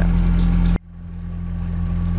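Narrowboat engine running with a steady low drone. It cuts off abruptly just under a second in, then the same drone fades back up over the next second.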